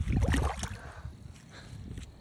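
Splash and sloshing of water as a released channel catfish kicks free of the hands and swims off, loudest in the first second and then dying away.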